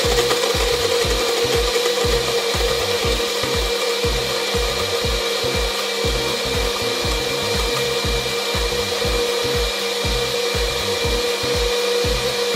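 Countertop blender running steadily at high speed, blending an iced mocha frappé mix; a continuous motor whine with an even, grinding rush.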